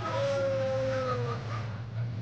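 A person's voice in one long, drawn-out call that slowly falls in pitch, over the steady low hum of a moving car's cabin.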